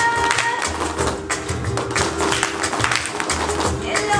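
Flamenco music with a held sung note that ends about half a second in, under sharp rhythmic hand-claps (palmas) and taps.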